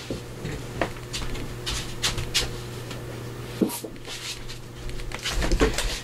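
Scattered light knocks and rustles of someone fetching sheets of paper, over a steady low hum.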